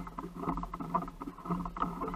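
Fishing reel being cranked on a bent rod while a fish is played from a kayak, with irregular clicks and knocks of reel and gear over a low steady hum of hull and water noise.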